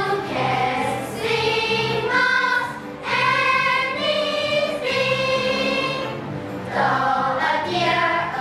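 A children's choir singing an English song together with musical accompaniment, in steady phrases with a repeating low bass line.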